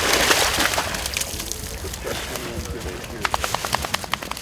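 Water splashing as a black Labrador retriever wades through lake shallows, loudest in the first second and then dying away. Near the end, a quick, even run of sharp clicks.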